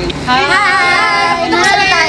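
Several young women calling out together in high, drawn-out, sing-song voices.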